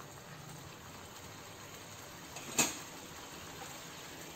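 One sharp knock of a metal spatula about two and a half seconds in, over a faint steady hiss.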